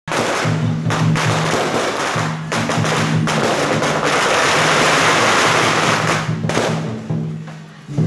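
Strings of firecrackers going off in a dense crackle, heaviest from about four to six and a half seconds and thinning out near the end. Music with a repeating low bass line plays under them.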